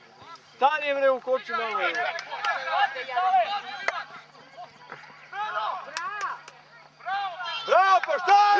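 Players' and spectators' voices calling out across a football pitch, with a few sharp knocks of the ball being kicked, one about four seconds in and two close together about six seconds in.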